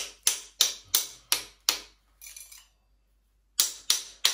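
An ice cube held in the palm being cracked by hand with sharp taps from a small bar tool: about six quick strikes, roughly three a second, then a pause and a few more taps near the end.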